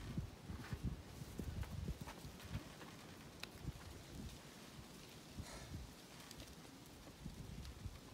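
Faint, irregular low thumps and scuffs of a climber's shoes and body against sandstone as he mantles onto the top of a boulder, with a few soft clicks.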